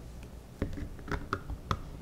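Plastic popsicle-mold lid being handled and fitted onto the mold tray: a quick run of light plastic clicks and taps over about a second.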